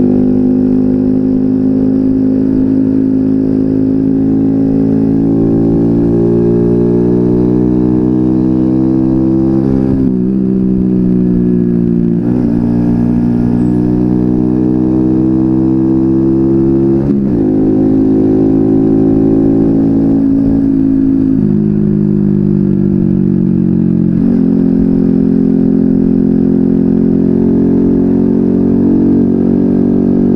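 Small four-stroke moped engine running steadily as the bike is ridden. Its pitch climbs slowly, then drops sharply several times, first about ten seconds in.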